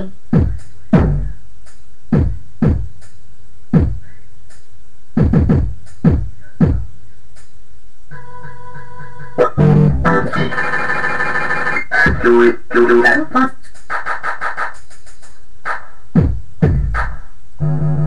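A homemade electronic beat playing back: loose kick-drum and percussion hits, joined about halfway through by held organ-like keyboard chords that thicken for a few seconds before the drum hits carry on alone.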